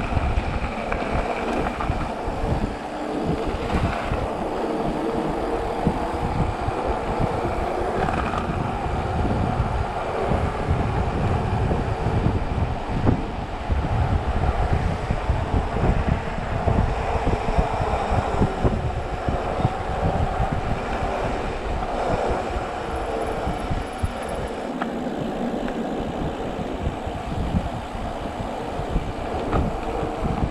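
Wind rushing over an action camera's microphone, with the rumble of a Specialized Turbo Levo electric mountain bike's tyres and frequent jolts and rattles as it rides over gravel and then a paved road. The noise is steady throughout.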